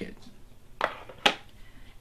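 Handling noise from a small metal suede-and-nubuck cleaning kit tin: a brief scrape, then one sharp metallic click a little after a second in.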